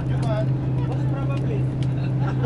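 Tour bus engine and road noise, a steady low drone inside the moving cabin, with passengers' voices chattering over it.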